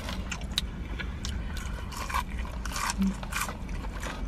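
Close-up chewing of crispy fried food (onion rings and fries): a string of short, sharp wet clicks and crackles from the mouth, over a low steady rumble.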